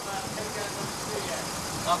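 A car engine idling steadily, with faint voices in the background.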